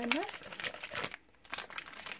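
A foil blind bag and its paper insert crinkling and rustling as hands handle them, with a short lull about a second in before the crinkling resumes.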